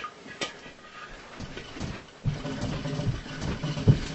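A person dancing on a room floor: a couple of soft knocks, then from about halfway a low rumble of feet shuffling back and forth, with a thud near the end.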